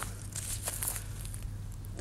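Light rustling and crackling, strongest in the first second, over a low steady hum.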